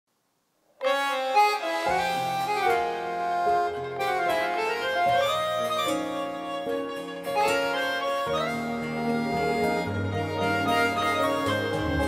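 Instrumental introduction of a Korean adult-contemporary (seong-in gayo) song: a lead melody over sustained chords, starting just under a second in, with a bass line joining about two seconds in.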